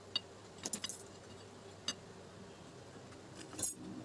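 A few light metallic clinks and taps as small steel parts on a bearing press are handled, about half a dozen, with a short cluster near the end.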